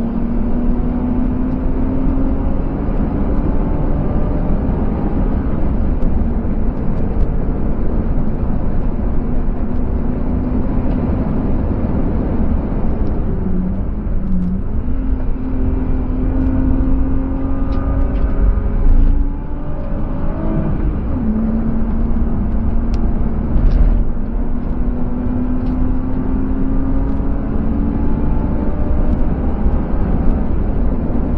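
BMW E36 320i's M50B25TU inline-six, heard from inside the cabin while being driven hard on track, with heavy road and wind rumble. The engine note dips about 13 seconds in as the car slows, climbs again, falls sharply with an upshift about 20 seconds in, then climbs steadily under acceleration.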